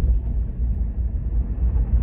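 Steady low rumble of road and engine noise heard inside a car's cabin while it is being driven.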